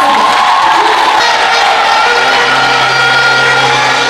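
A crowd cheering and applauding. About halfway through, music with long held notes joins it.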